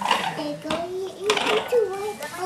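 A baby vocalizing in short, high-pitched babbling sounds, with a couple of light clatters as a toy bus is set down on the floor, one near the start and one partway through.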